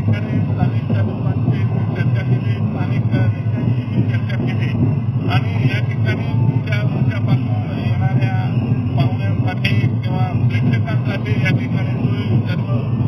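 A man speaking over a steady, low background din.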